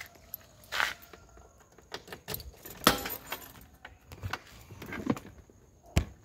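Handling noise close to a phone's microphone: scattered knocks, clicks and rustles, the sharpest knock about three seconds in.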